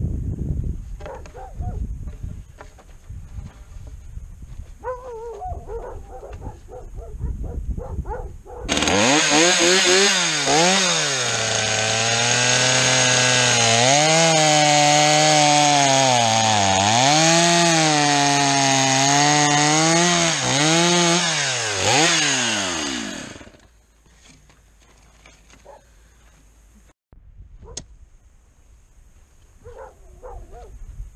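Chainsaw cutting through a round wooden brace post. It starts about nine seconds in and runs hard for some fifteen seconds, its pitch dipping again and again as the chain bites into the wood, then stops abruptly. Light knocks and handling noises come before it.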